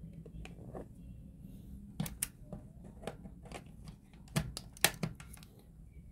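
Handling of a power adapter and its cable: a few sharp clicks and knocks with light plastic rustling, as the adapter is plugged into a wall socket.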